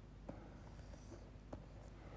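Near silence with a stylus faintly scratching and tapping on a pen tablet, two light ticks a little over a second apart.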